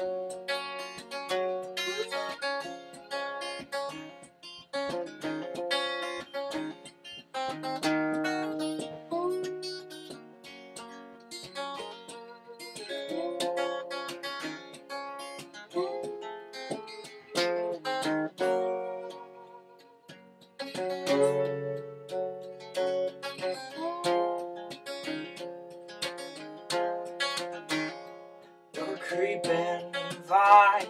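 Acoustic guitar playing the instrumental introduction of a folk song: picked and strummed notes ringing out, with a few sliding notes in the middle.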